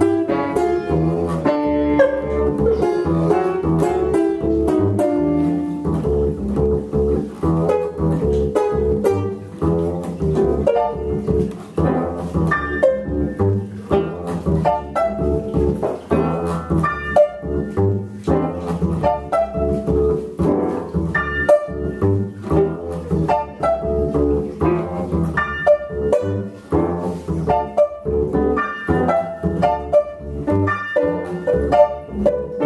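Instrumental improvisation by a trio on keyboard, banjo and bass, with quick plucked notes over a bass line.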